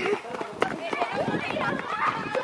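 Indistinct chatter of several voices, with a few sharp clicks or knocks.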